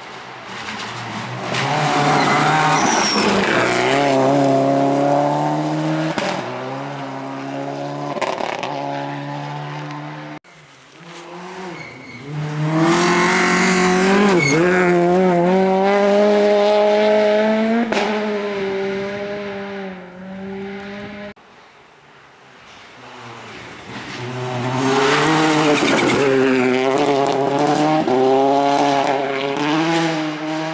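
Rally cars racing past one after another on a gravel stage, three passes with abrupt cuts between them. Each engine revs hard and drops in pitch through gear changes over a hiss of tyres on loose gravel.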